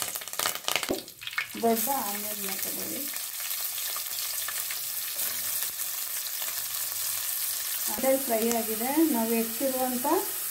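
Curry leaves crackling and spitting in hot oil in an aluminium pan, then, from about a second and a half in, a steady sizzle as chopped onions fry and are stirred with a steel spoon.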